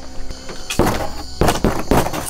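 A few dull knocks and thumps, the last ones from a hand knocking on a cardboard treehouse wall.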